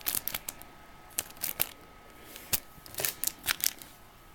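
Clear plastic packaging bag crinkling as it is handled and put down, a scatter of short, irregular crackles.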